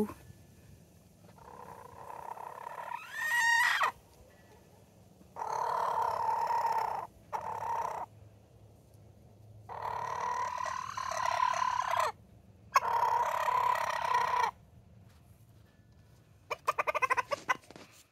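A rooster making a series of drawn-out calls, about five, each lasting one to two seconds with short gaps between them. Near the end comes a quick run of clicks.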